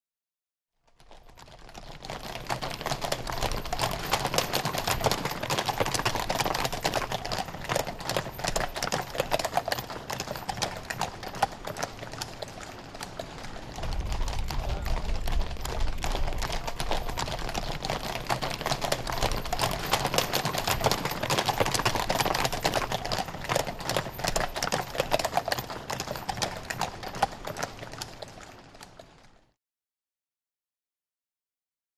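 Hooves of many horses of a mounted guard walking together on a paved road, a dense, continuous clip-clop. It fades in about a second in and fades out just before the end, with a low rumble joining about halfway.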